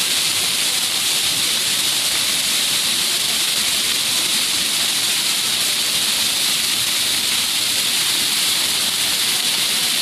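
Water jets of a plaza floor fountain spraying up and splashing back onto the pavement: a steady, loud rush of falling water.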